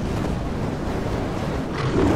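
Fiery roar sound effect for an animated logo sequence: a low, rumbling whoosh that swells into a louder burst near the end.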